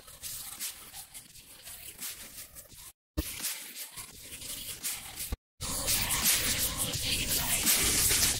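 MP3 compression artifacts soloed in iZotope Ozone's Codec Preview: a faint, thin, hissy residue of the song, the part that MP3 encoding throws away. It cuts out twice, about three seconds in and about five and a half seconds in, and is louder after the second gap.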